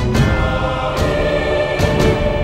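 Orchestral film-score music with choral voices holding sustained chords, punctuated by a few percussion hits.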